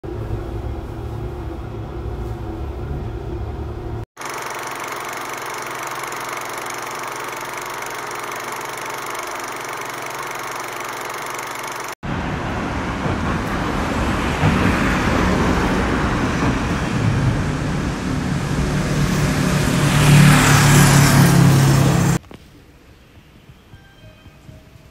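City street noise with road traffic. A vehicle's rumble builds to its loudest near the end, then cuts off sharply. Before it come two shorter, different stretches of background sound, separated by abrupt cuts.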